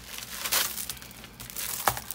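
Plastic packaging crinkling as it is handled and unwrapped, with one sharp click just before the end.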